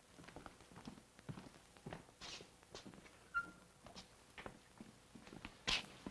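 Faint footsteps of people walking on a hard surface: irregular short taps, about two a second.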